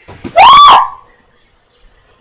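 A child's loud, high-pitched yell, one call about half a second long whose pitch rises and then falls.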